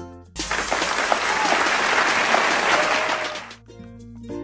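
Crowd applause with a few voices cheering, starting suddenly just after a chiming children's tune stops and lasting about three seconds before fading out as the music comes back.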